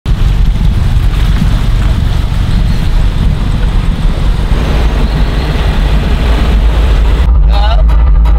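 BMW X5 SUV's engine running with a deep, steady sound, heard from outside the car. About seven seconds in, the high end drops away and the sound turns muffled, as heard from inside the cabin.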